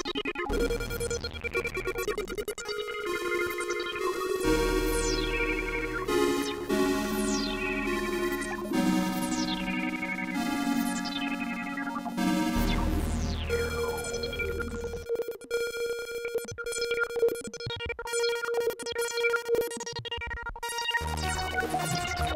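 Fender Chroma Polaris analog synthesizer played on its keyboard and recorded dry, straight from the synth with no effects. Chords and notes change every second or two, with high tones sweeping steeply downward over several of them, and one steady note held through much of the second half.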